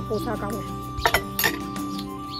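Ceramic dishes and a metal serving spoon clinking as a plate of boiled greens is handled, with a few sharp clinks about a second in.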